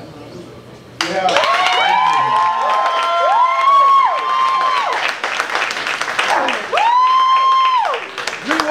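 Audience clapping, with several people whooping long rising-and-falling 'woo' calls. The applause starts suddenly about a second in, and one loud whoop comes near the end.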